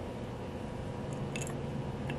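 A couple of faint small metal clicks from fingers fitting a small bolt into the compressor's suction-muffler bracket, over a steady low hum.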